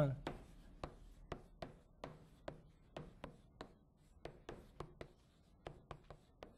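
Chalk writing on a chalkboard: an irregular run of short, sharp taps, about three to four a second, as the chalk strikes the board on each stroke.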